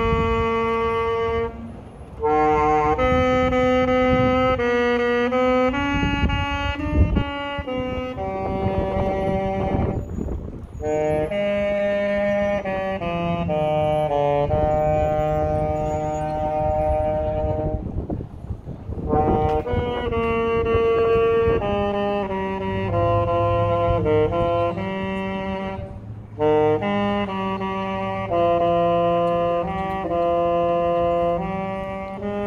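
Solo saxophone playing a slow melody of held notes, in phrases broken by short pauses for breath about every eight seconds.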